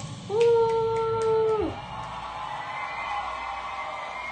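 A young girl's singing voice holds one long note for about a second and a half, sliding up into it and dropping off at the end, then fainter sound follows.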